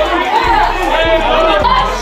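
Several people talking at once over music with a deep, repeating bass line.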